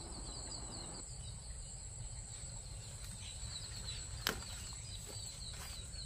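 Faint outdoor ambience with a fast, high-pitched chirping repeating several times a second over a low rumble, and one sharp click about four seconds in.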